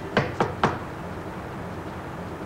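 Three quick knocks on a door, about a quarter of a second apart.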